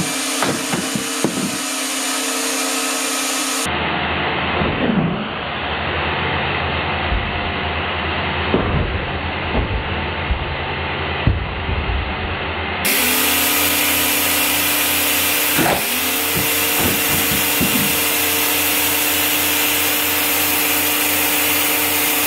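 Electric motors spinning the wheels of a four-wheeled cube shooter prototype, a steady whine and hum, with scattered knocks and thumps as cubes are fired and land on wood. The sound changes abruptly twice, about four seconds in and again near thirteen seconds.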